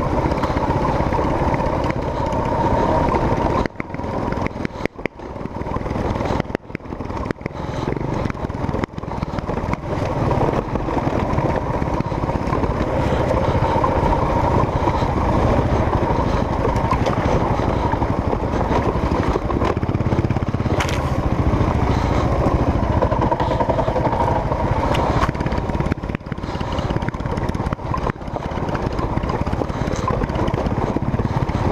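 Dual-sport motorcycle engine running while riding over a rocky dirt trail. The sound dips sharply several times between about four and nine seconds in.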